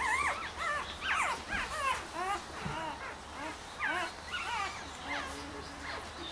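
Newborn Golden Retriever puppies, five days old, whimpering and squeaking: a string of short, high cries, several a second and sometimes overlapping.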